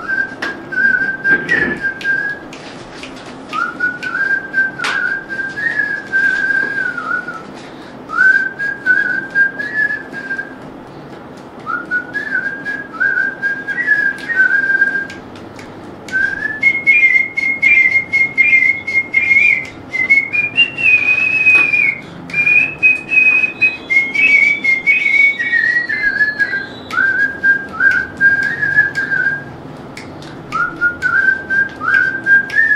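A person whistling a song melody by mouth, a single pure tune in phrases of a few seconds with short pauses for breath; the melody climbs higher about halfway through and comes back down near the end. A brief click sounds about five seconds in.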